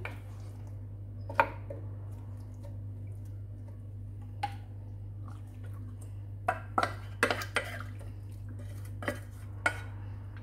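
Scattered clinks and knocks of a metal bowl and utensil against a glass baking dish as marinated chicken pieces are laid among vegetables, with a quick cluster of them about seven seconds in. A steady low hum runs underneath.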